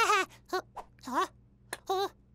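A cartoon chick character's voice: a string of short, whiny, wavering vocal noises without words, about five or six in quick succession.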